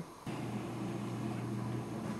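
A steady low mechanical hum, like an engine or motor running, which starts abruptly about a quarter second in.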